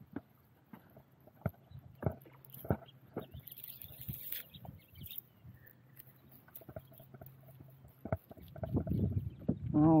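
Scattered light clicks and knocks with a short rustle about four seconds in, from a cast net being handled after a throw for bait shad.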